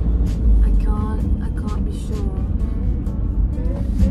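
Van cab while driving: a steady low engine and road rumble, with background music and a few short pitched phrases over it.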